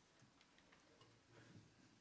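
Near silence: room tone with a few faint scattered clicks and a soft rustle.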